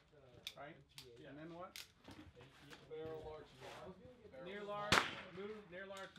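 .22LR rimfire rifle fired once about five seconds in; the shot is the loudest sound. A few fainter sharp clicks come in the first two seconds, under low voices talking.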